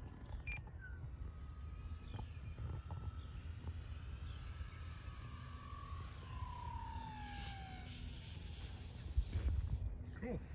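Electric RC floatplane's motor and propeller whine, dropping steadily in pitch as it throttles back and comes in to land. About three-quarters of the way through a hiss follows as the floats touch down and slide on the snow. Wind rumbles on the microphone, stronger near the end.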